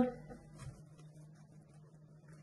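Faint soft scraping and pressing of a silicone spatula mixing flour into a soft dough in a glass bowl, over a low steady hum.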